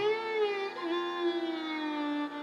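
Violin playing a sustained melodic phrase in Raga Bihag, sliding between notes and then holding a long note, over a steady tanpura drone.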